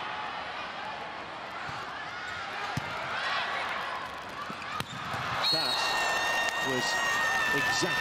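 Volleyball being struck in play over steady arena crowd noise: two sharp ball hits about three and five seconds in, fitting a serve and its pass. From about five and a half seconds, steady high tones are held above the crowd.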